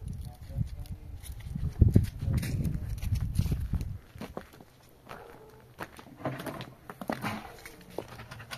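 Footsteps over stony, frozen ground with a low rumble on the microphone for the first half. Then a few short clucks from hens near the end.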